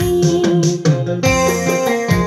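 Electronic keyboard playing a melody over its own backing rhythm and bass line, in an instrumental passage of the song with no voice.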